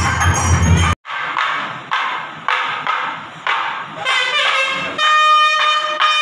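Temple ritual music: bells and drumming that cut off abruptly about a second in, a few struck, ringing notes, and then a wind instrument playing loud sustained notes with pitch slides from about four seconds in.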